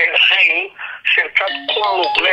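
Continuous speech with a thin, narrow-band quality like a voice over a telephone line, with a few brief steady tones sounding under it near the end.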